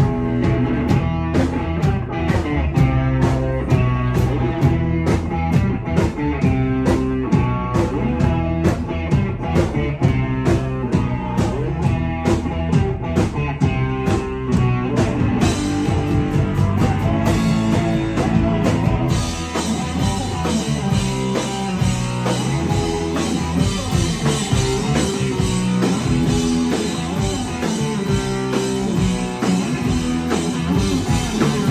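Live rock band playing an instrumental passage: electric guitar and bass over a drum kit keeping a steady beat. Cymbals come in about halfway through and the playing gets fuller from there.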